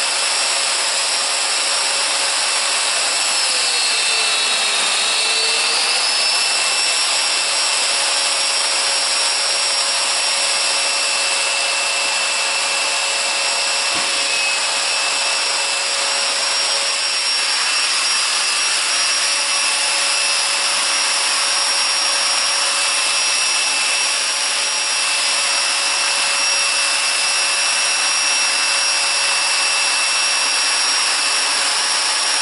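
Festool Domino joiner running with its dust extractor drawing through the hose while cutting mortises: a steady whine over a rushing noise. The pitch dips briefly and recovers about four seconds in.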